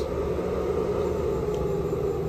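Steady electrical hum and fan noise, with a faint low tone, from the blue power unit drawing current from a 40-cell scooter battery pack under a load test.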